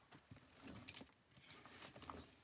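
Near silence: room tone with a few faint clicks and rustles.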